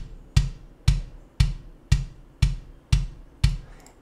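Sampled kick drum from a MIDI-programmed drum kit, hit at an even pace of about two a second, each hit a short low thump with a click on top.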